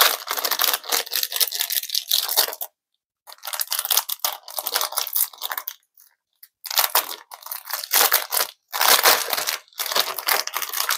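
Clear plastic packaging crinkling and tearing as it is handled and opened, in several bursts with short pauses between them.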